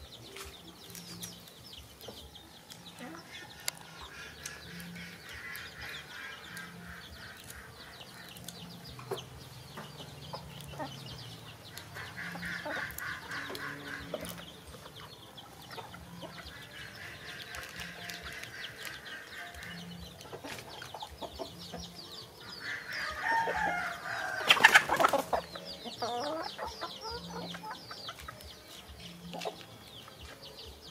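Birds calling on and off in the background, in several runs of rapid pulsed calls, with the loudest call, long and falling in pitch, about three-quarters of the way through.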